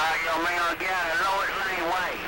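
A voice coming over a CB radio receiver as another station transmits, with the words unclear. The signal opens sharply just before and holds at a steady level.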